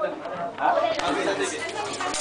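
Several people chattering at once, overlapping voices in a crowded room, with a couple of light clicks about a second in.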